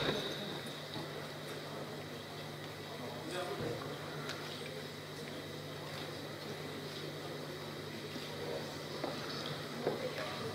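Large-hall room tone: a steady low hum with faint, indistinct murmuring voices.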